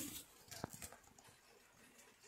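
Very faint rain patter on a clear-panelled lean-to roof, with a few soft taps about half a second in.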